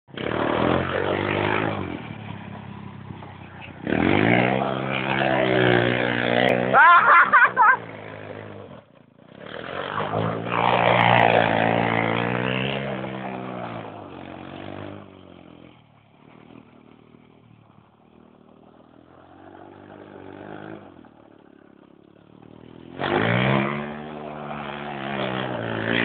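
Small engine of a homemade go-kart revving hard in repeated bursts, with the pitch rising and falling as it slides around on gravel, dropping back to a low idle for several seconds in the middle before revving up again near the end.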